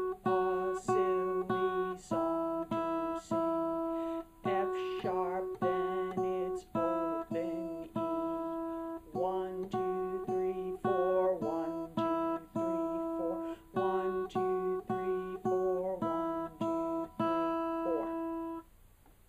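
Acoustic guitar playing a simple, slow melody of single plucked notes at a steady beat, about two notes a second, in short phrases with brief breaks between them. The tune moves among a few high notes including F sharp, as in a beginner's note-reading exercise.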